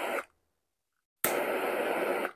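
Handheld butane torch lighter firing in two short bursts of hissing flame, heating an alcohol-soaked carbon felt wick to light it and start its wicking action. The first burst cuts off just after the start; the second starts a little past a second in.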